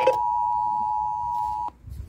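Emergency Alert System two-tone attention signal playing from a portable FM radio's speaker: a steady dual tone that cuts off abruptly near the end, with a click and a brief low thump, as the alert message is about to begin.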